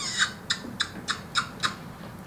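WowWee Fingerlings baby monkey toy making a quick run of about six short, high chirps from its small speaker, its electronic reaction to being handled.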